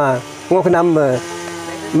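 A man's voice speaking briefly, then trailing into a long drawn-out vowel held on one steady pitch near the end.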